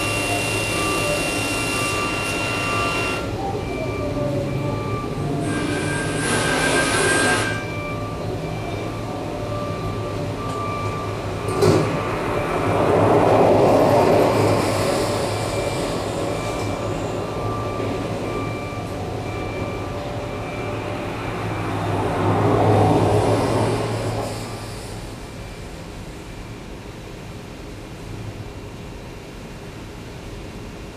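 Live improvised electroacoustic music made from field recordings and processed radio: a dense layer of noise over a low hum, with faint pulsing beep tones. It swells twice and drops quieter for the last few seconds as the set winds down.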